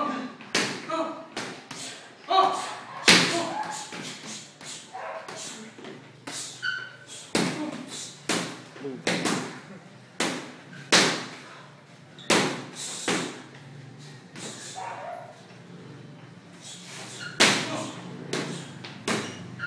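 Boxing gloves landing in sparring: a long irregular run of sharp punch impacts on gloves, headgear and body, some in quick twos and threes, the loudest about three seconds in.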